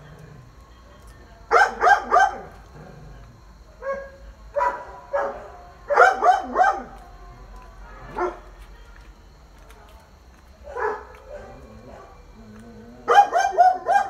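A dog barking in short bursts, mostly in groups of two or three, several times.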